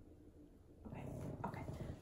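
Small poodle puppy growling in play, a low rough rattle that starts about a second in.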